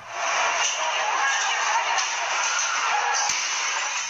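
Din of a crowd of protesters inside a clothing store, many voices shouting and chanting at once, sounding harsh and thin with no bass, as heard through a phone's recording.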